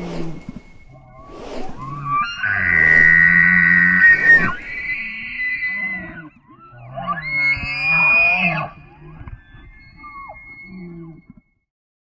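Intro sound design for a title sequence: sharp swooshes, then a loud held, distorted electronic tone for about four seconds. A shorter wavering, gliding tone follows, and the sound fades out just before the end.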